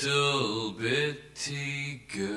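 A low male voice chanting in long, drawn-out tones: three held syllables that slowly bend in pitch, with short breaks between them.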